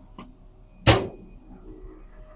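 A metal door bangs shut once, about a second in, with a short metallic ring after the hit.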